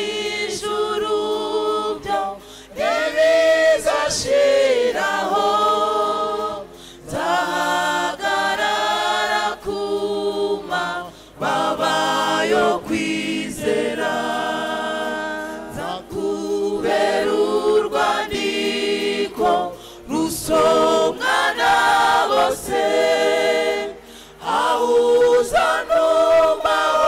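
Mixed choir of men's and women's voices singing a hymn unaccompanied, led by a man singing into a microphone, in phrases with short breaks between them.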